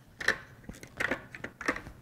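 Short plastic clicks and knocks of a Reevu MSX1 motorcycle helmet's face shield being snapped off and back onto its side mount as its release lever and tabs engage, about half a dozen sharp clicks spread through.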